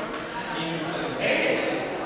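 Voices and crowd chatter echoing in a gymnasium at a basketball game, with a basketball bouncing on the court floor. A brief high squeak comes about half a second in.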